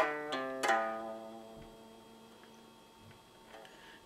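Guitar finishing a short blues riff: a few quick picked notes, then the last note left ringing and fading out over about three seconds.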